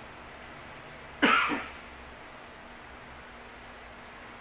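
A single sharp cough about a second in, over quiet room tone with a faint steady hum.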